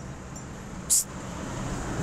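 Road traffic going by on a highway: a passing vehicle's engine and tyre noise growing louder through the second half. A brief hiss about a second in.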